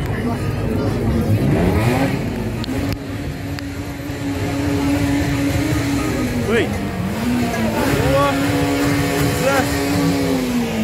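A loud car engine revving on the street: the revs sweep up about a second in, then hold high and steady, dipping briefly around seven seconds before holding again. Crowd voices mix in.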